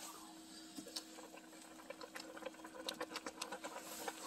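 A saucepan of ramen bubbling at a full boil: faint, irregular small pops and ticks that come thicker toward the end.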